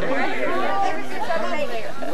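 Several people talking at once: overlapping conversation of a group gathered outdoors.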